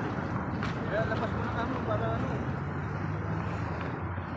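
Steady outdoor street ambience: traffic noise from a nearby road, with brief snatches of voices in the first half.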